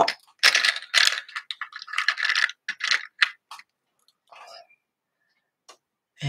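Wooden coloured pencils clicking and rattling against each other as they are handled and set down. A quick run of clicks comes first, then a short rustle about four seconds in.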